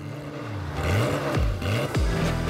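A car engine revving, its pitch dipping and climbing twice and growing louder about halfway in.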